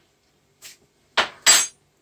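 A faint click, then two sharp metallic clinks about a third of a second apart in the second half, the second one ringing. It is kitchen metal knocking against a saucepan as an egg goes into the pan.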